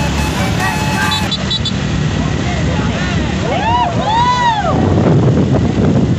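Road noise from a passing truck and motorbikes, with background music ending about a second in. A few long rising-and-falling calls sound about halfway through, and near the end wind buffets the microphone.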